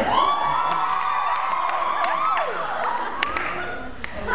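Audience cheering and screaming, breaking out all at once and staying loud, easing off a little near the end.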